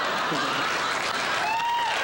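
Studio audience applauding and laughing, a steady wash of clapping, with a voice rising over it near the end.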